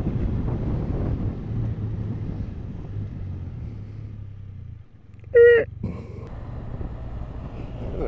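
Can-Am Spyder's engine running steadily while riding, easing off a little past halfway. About five seconds in there is a single short, loud blast of a vehicle horn, a warning honk in a close call.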